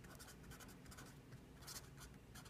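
Felt-tip marker writing on paper: faint short scratchy strokes, one a little louder near the end.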